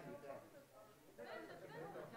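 Faint chatter of several people talking at a distance in a large auditorium, dipping quieter for a moment before voices pick up again.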